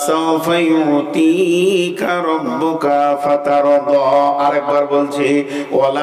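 A man's voice chanting in a slow, drawn-out melodic tune into a microphone, holding long steady notes, with short breaths about two seconds in and near the end.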